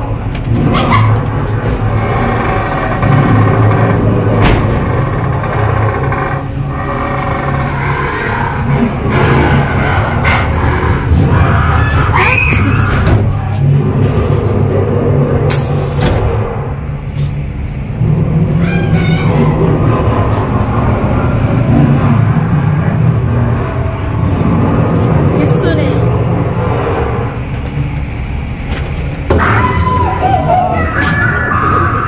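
Loud, continuous ghost-house attraction soundtrack: a steady low rumble under eerie music and voices, broken by a few sharp bangs.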